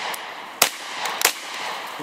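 Beretta CX4 Storm 9mm semi-automatic carbine firing a few single shots, about half a second apart, each followed by echo.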